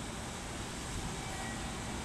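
Steady low rumble and hiss of a railway station, with an EF210 electric locomotive running light and approaching slowly from a distance. Faint brief tones sound about a second and a half in.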